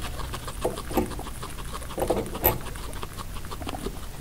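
Guinea pig chewing timothy hay in quick, fine crunches, with the dry rustle of hay strands being tugged from a cardboard feeder. A few louder crunches come about one, two and two and a half seconds in.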